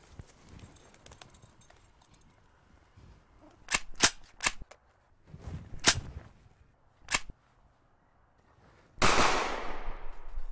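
Gun sound effects: about six sharp cracks between about three and a half and seven seconds in, then a loud burst near the end that dies away.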